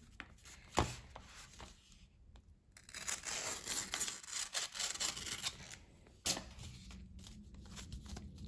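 A utility knife slicing open a brown kraft paper mailer envelope: a long scratchy cut through the paper in the middle, with a sharp click about a second in and another about six seconds in.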